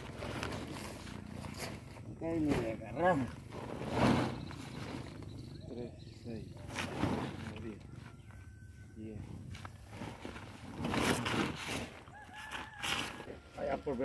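Pitchfork digging into a pile of chopped silage and tipping it into a woven plastic sack: irregular crunching scrapes with the rustle of the sack, and low murmured voices now and then.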